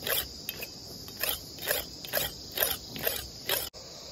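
A sickle blade scraped back and forth on a flat whetting stone to sharpen its edge, about two strokes a second, stopping abruptly near the end. Steady cricket chirring underneath.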